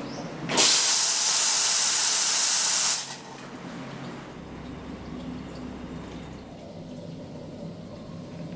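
Espresso machine steam wand, a La Marzocco Linea Mini, opened for a purge: a loud burst of steam hiss starts about half a second in and cuts off sharply after about two and a half seconds.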